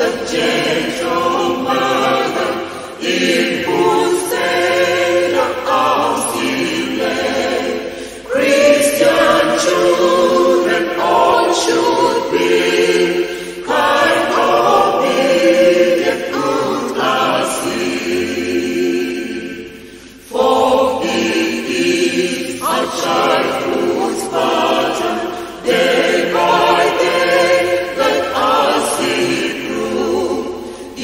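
Choir singing an English hymn in phrases of several seconds, each ending in a short break before the next line begins.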